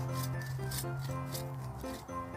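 Bow saw cutting through a small Christmas tree's wooden trunk, with rasping back-and-forth strokes about three a second, under background music.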